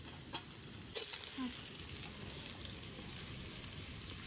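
Sliced carrots and green capsicum sizzling faintly in a steel kadai over a gas burner as they are tipped into the pan, with a couple of sharp clicks about a third of a second and a second in.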